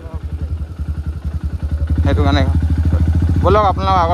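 Royal Enfield Himalayan Scram single-cylinder motorcycle engine running, a rapid, even pulse of firing strokes throughout.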